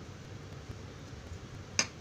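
A single sharp click near the end, over a low, steady background rumble.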